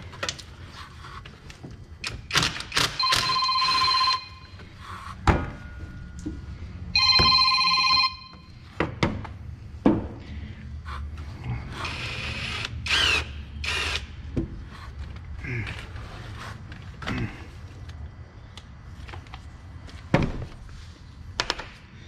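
Metal hand tools clicking and knocking against engine parts as a socket is worked onto a nut, with two roughly one-second bursts of a steady ringing tone about four seconds apart.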